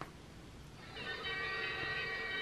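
A printed video card's small built-in speaker starts playing its soundtrack about a second in: a steady chord of several held tones. A faint click comes at the start, as the card is opened.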